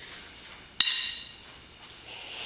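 A single sharp wooden knock a little under a second in, ringing briefly before it dies away: a drumstick striking something as the drummer picks up his sticks.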